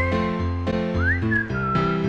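Background music: a whistled melody that slides up about a second in and then holds a note, over bass notes that change about every half second and sustained chords.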